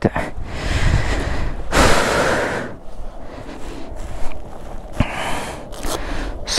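A person breathing heavily close to the microphone, with noisy rushing breaths; the strongest lasts about a second, starting about two seconds in. A single sharp click about five seconds in.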